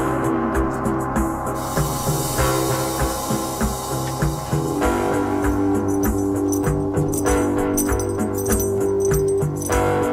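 Live instrumental band jam: electric guitar and keyboard hold sustained notes over drums and rattling hand percussion. A high hissing wash comes in about two seconds in and cuts off about five seconds in.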